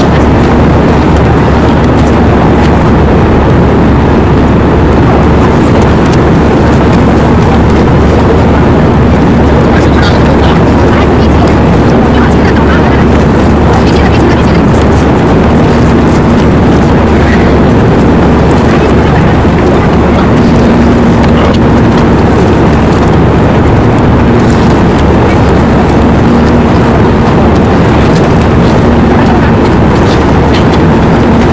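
Loud, unbroken din of a crowd with indistinct voices, heavily distorted.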